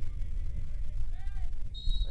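Wind buffeting an outdoor field microphone, a loud, uneven low rumble, with a faint distant voice calling out about a second in and a brief high tone near the end.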